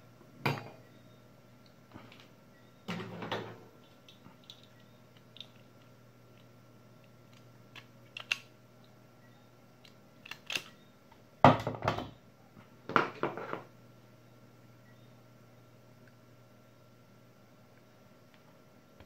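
Scattered knocks and clatter of hard plastic and metal tools being handled and set down on a silicone work mat, with the two loudest knocks about two-thirds of the way through, over a faint steady hum.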